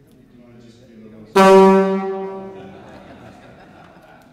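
A single loud horn blast on one steady low note, starting suddenly about a second and a half in and fading away over the next second and a half, the kind of loud sound the audience has just been warned the stage instruments may make.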